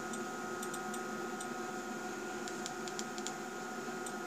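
Several faint clicks of front-panel keys being pressed on a Yokogawa LS3300 AC power calibrator, more of them in the second half, over a steady background hum with a thin high tone.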